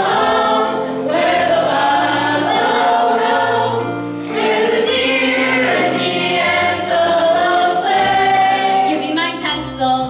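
A choir of teenage boys and girls singing a slow song together under a conductor, with a low sustained accompaniment beneath the voices.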